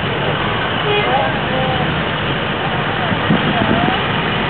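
A vehicle's engine running steadily as it rolls slowly toward the listener, with people's voices chattering faintly in the background.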